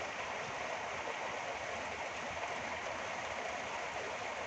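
A steady hiss of background noise at a low level, even throughout, with no distinct events.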